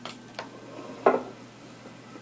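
Wooden peg-puzzle pieces knocking against a wooden puzzle board and tabletop: two light taps, then a louder clack about a second in.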